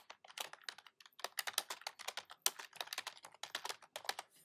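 Typing on a computer keyboard: a quick, even run of key clicks, about five to seven a second, as a short phrase is typed out.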